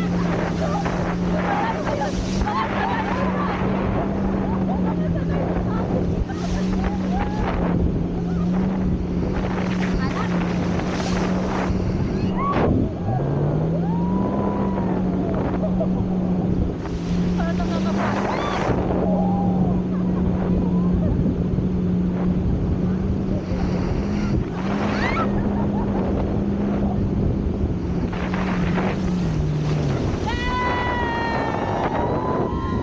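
A towing speedboat's engine drones steadily, its pitch shifting slightly now and then, over rushing water spray and wind on the microphone. Riders laugh and shriek in scattered bursts.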